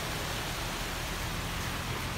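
Steady rushing noise of shallow surf washing onto a sandy beach.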